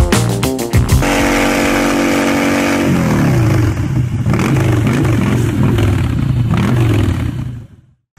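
A short burst of music with a beat, then a motorcycle engine revving: it holds a steady note, drops, and then rises and falls in pitch for several seconds before fading out near the end.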